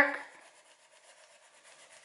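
Wax crayon rubbing back and forth on paper in light coloring strokes, faint.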